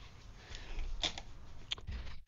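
Low room noise with a soft sniff or breath, and a few light clicks about a second in and near the end.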